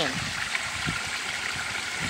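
Pond water rushing and splashing, stirred by circulation pumps running fast: a steady wash of moving water.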